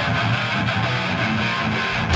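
Hardcore band playing live: loud electric guitars and bass in a dense, continuous wall of sound as a song gets under way.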